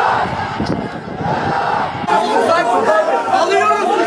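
Crowd of people shouting and talking over one another, with wind buffeting the microphone for the first half. About halfway through, the sound changes suddenly to many voices close by, all talking at once.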